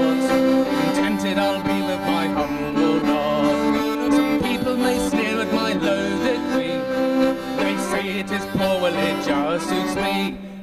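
Fiddle and melodeon (diatonic button accordion) playing an instrumental passage together, with held notes.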